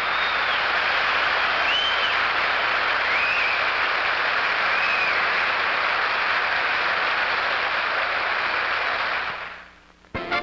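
Television studio audience applauding steadily, with a few short high whistles rising and falling over the clapping. The applause fades out near the end.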